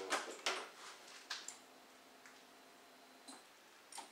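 A few faint, scattered clicks and taps, with a faint steady hum through the middle.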